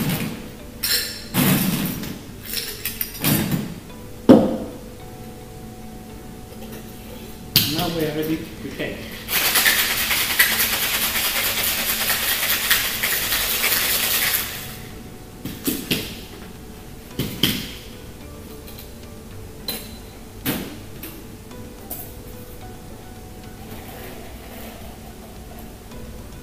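Ice and glassware clinking, with a few sharp knocks of metal bar tools, then a cocktail shaker full of ice shaken hard for about five seconds, then a few light clinks.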